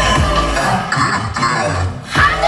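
Loud electronic dance music with a steady kick-drum beat. The drums drop out about half a second in for a short break.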